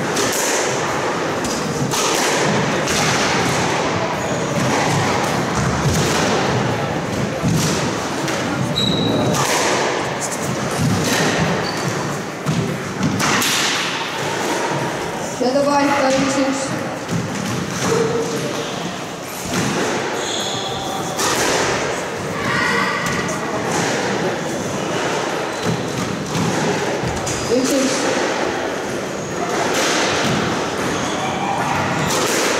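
Squash ball struck by racquets and slamming into the court walls in rallies: repeated sharp thuds that echo in the enclosed court. Voices of onlookers talk over the break between points in the middle.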